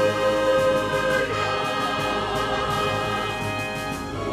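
Church choir singing in parts, holding long sustained notes.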